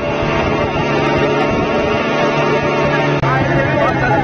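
Motorboat engines running steadily as the boats speed along the river. Voices rise over them near the end.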